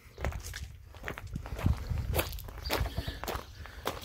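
A person's footsteps on gravel and concrete: uneven steps and scuffs over a low rumble.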